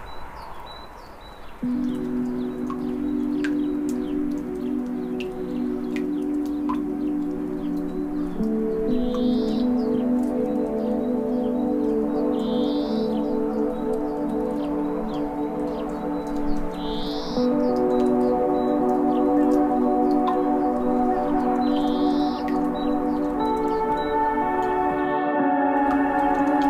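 Slow ambient relaxation music: soft sustained, bell-like chords begin about two seconds in and change every several seconds, with higher notes joining near the end. Over it, a short high rising chirp recurs about every four seconds, along with faint scattered clicks.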